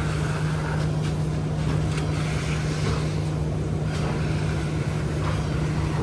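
An engine running steadily, a constant low hum with no change in speed.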